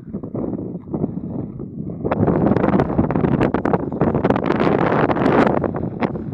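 Wind buffeting the microphone in rough gusts, growing louder about two seconds in, with a few sharp crackles.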